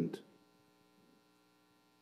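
The last word of a voice on the public-address microphone ends about a quarter-second in. Then near silence with a faint, steady electrical hum from the sound system.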